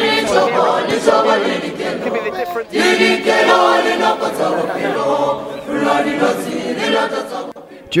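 A choir of several voices singing together unaccompanied, a cappella.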